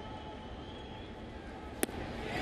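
Steady ballpark crowd noise, then a single sharp pop near the end as the pitch smacks into the catcher's mitt on a swinging strike three.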